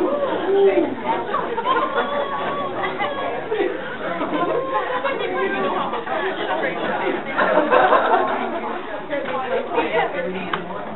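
Many people talking at once in a large room: a steady babble of overlapping voices.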